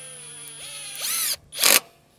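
Cordless impact driver driving a screw into the end of a pine board: a motor whine that rises in pitch after about a second, then a short loud burst near the end. The screw, set too close to the edge, splits the wood.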